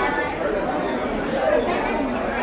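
Background chatter of many people talking at once, a steady babble of overlapping voices with no single clear speaker.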